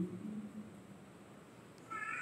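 A pause in a man's speech: his voice trails off in the first half second, then faint room tone, and he begins speaking again just before the end.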